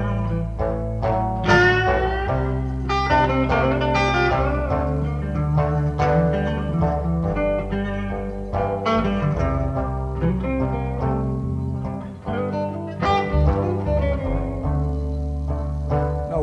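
Live blues band music: an electric guitar plays slow lead lines with bent notes over a bass.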